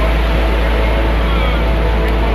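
Steady low rumble of wind on the microphone over the wash of surf on the beach, with soft background music coming in faintly.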